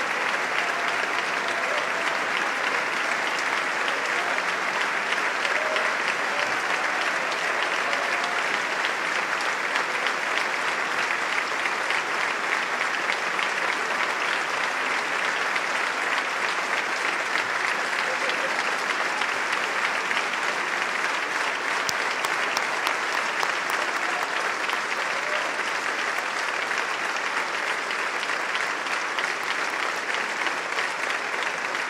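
A large crowd giving a sustained standing ovation, clapping steadily throughout, with a few faint voices mixed in.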